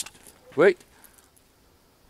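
Hinge of a metal garden gate giving one short squeal as the gate swings open, about half a second in.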